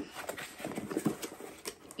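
Hands rummaging in a box of packed items: rustling with a scatter of light, irregular clicks and knocks as something is lifted out.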